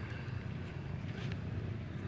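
Steady low background rumble with no clear source, and a faint brief voice about a second in.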